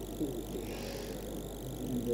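Steady low hum with faint fine crackling from a background audio feed, and a brief faint voice-like sound about a quarter of a second in.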